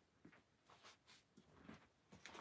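Near silence: room tone with a few faint rustles and light taps.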